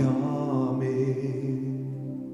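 A man singing a held, wavering note over sustained chords on a Roland digital stage piano. The voice ends about a second and a half in, leaving the piano chords ringing and slowly fading.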